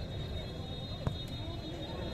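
Steady open-air crowd and ground noise at a football match, with one sharp thud of a football being kicked about a second in, and a faint steady high whine throughout.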